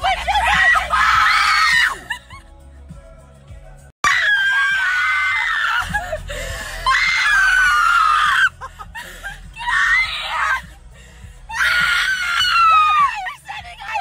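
A young woman screaming in a string of long, high-pitched bursts, several falling in pitch, with short gaps between them. The low rumble of a moving car runs underneath.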